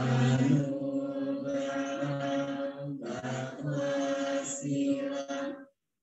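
Buddhist devotional chanting in Pali by a group of voices on a nearly steady pitch. It runs as one long phrase with a brief dip about halfway, then stops for a breath just before the end.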